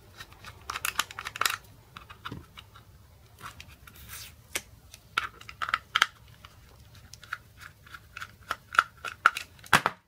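Small flat-blade screwdriver prying and scraping at a plastic charger case and its foil label, with scattered clicks and scratches. A quick run of small clicks comes later on and a sharp click just before the end as the case works open.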